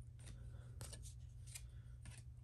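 Faint slides and light clicks of trading cards, a few times, as cards are moved one at a time from the front to the back of a small hand-held stack.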